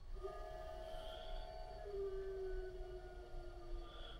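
Faint, steady whine of a VEVOR welding positioner's turntable motor running under its speed controller, dropping slightly in pitch about two seconds in as the speed is turned down.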